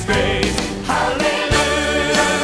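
Live recording of a choir singing a gospel praise song with band accompaniment, with a drum hit about one and a half seconds in.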